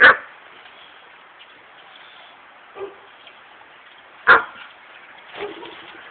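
A dog barking twice, single sharp barks about four seconds apart.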